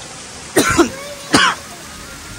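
A man's two short, sharp vocal bursts, like coughs, about half a second apart.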